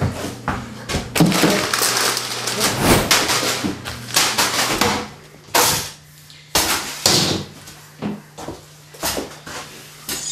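Broom and mop being worked around a kitchen: dense scraping and irregular knocks for the first half, then separate scrapes and knocks.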